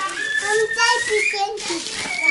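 A toddler's voice whining and fussing in a long, high, rising cry, with plastic grocery bags crinkling under a hand.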